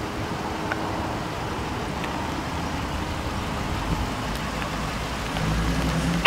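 Steady outdoor road-traffic noise, a low rumble of vehicles, swelling briefly near the end.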